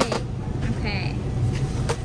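Steady low rumble of a store's background noise, with a brief pitched vocal sound about a second in and a sharp click near the end.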